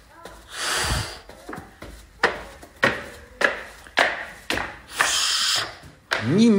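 Footsteps climbing wooden stairs, a knock roughly every 0.6 s. A disinfectant spray hisses briefly about half a second in and again near the end.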